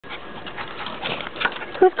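A West Highland white terrier making short, irregular breathy noises.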